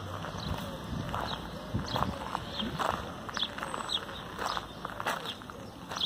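Footsteps crunching on gravel at a steady walking pace.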